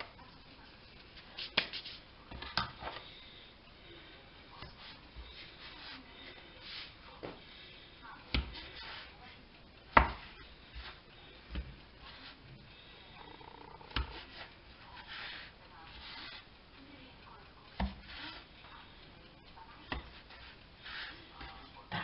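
A knife or dough cutter knocking sharply against a laminate counter as a soft roll of quark dough is cut into pieces, one knock every few seconds, the loudest about ten seconds in, with soft rubbing and scraping of hands and dough between them.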